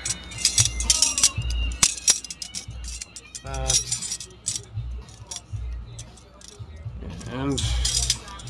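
Cast metal puzzle pieces clinking and rattling against each other as they are worked by hand, a run of sharp irregular clicks that is busiest in the first couple of seconds. A brief voice sound comes about midway and again near the end.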